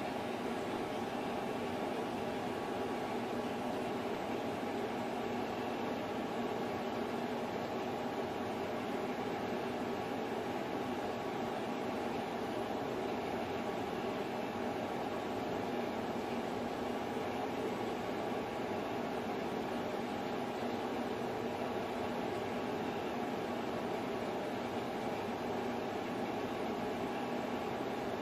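Steady background noise: an even hiss and hum with a few faint steady tones that do not change.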